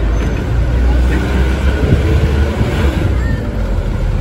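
Steady low engine rumble of a vehicle being ridden in, with wind noise on the microphone.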